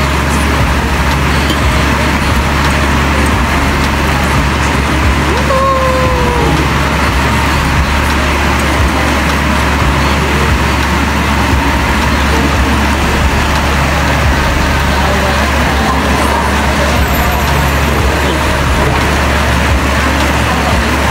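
Heavy rain pouring down steadily outside, an even rushing noise. About six seconds in a short pitched call, like a voice, sounds briefly over it.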